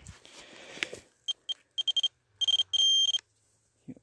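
Electronic beeping of a metal-detecting pinpointer closing in on a target in dug soil: two short high beeps, then a quicker run of beeps, then a steady tone held for nearly a second.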